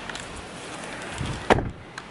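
A car door shut once with a single solid slam about one and a half seconds in, over faint outdoor background noise.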